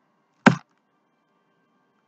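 A single sharp knock about half a second in, from an object being handled on a table.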